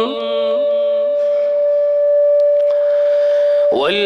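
A public-address system feeding back during a pause in a man's amplified Quran recitation: one steady, high, pure ringing tone held for about three seconds. The recitation ends its phrase at the very start and comes back in near the end.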